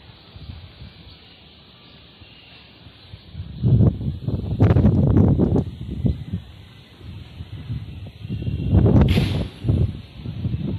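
Strong wind gusts buffeting the microphone, a low rumble that surges loudly twice, once a few seconds in and again near the end.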